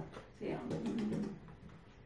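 A woman's short non-word vocal sound, a quick run of breathy pulses lasting under a second, starting about half a second in.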